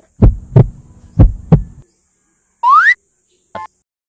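Heartbeat sound effect: two double thumps in the first two seconds, followed by a short rising whistle glide and a brief click.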